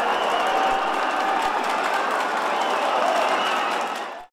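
Football stadium crowd applauding and cheering, a steady wash of clapping with voices mixed in.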